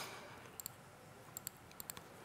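Faint clicks from a laptop being operated by hand: three quick pairs of clicks, about a second in, near the middle and near the end, over a low room hum.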